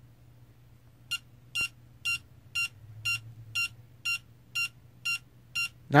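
Howard Miller digital alarm clock's alarm going off about a second in: short, high electronic beeps about two a second, not very loud but exceptionally annoying.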